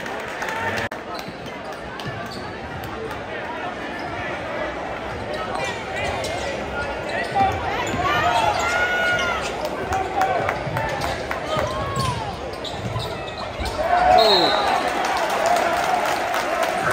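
A basketball being dribbled on a hardwood gym floor during live play, with sneakers squeaking in short bursts through the middle, over the steady chatter of a large crowd in an echoing gym. The crowd grows louder near the end.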